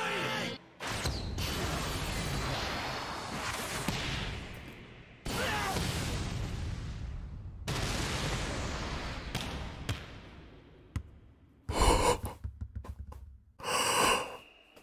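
Sharp, loud gasps from a man, twice near the end, after the anime's soundtrack of a noisy volleyball arena fades out about ten seconds in.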